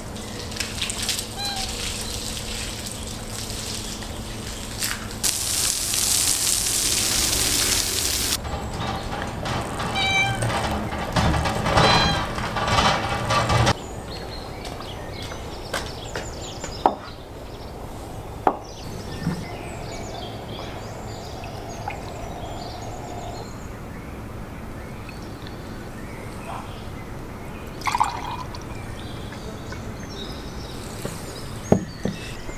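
Water from a garden hose splashing onto a steel barrel grill as it is rinsed and scrubbed with a sponge, a loud, hissing spray that stops about 14 seconds in. After that, only a quieter background with a few sharp clicks and knocks.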